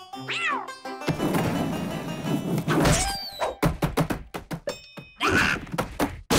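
Cartoon crash sound effects over music: a skateboard wipeout made of a long noisy clatter and a quick run of sharp knocks and thunks. A cartoon cat's cries sound near the start and again near the end.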